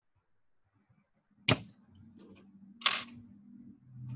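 Handling noise from hands working wire and parts on a glass tabletop. A sharp click comes about 1.5 s in, then a short, louder burst of noise near 3 s, over a faint low hum.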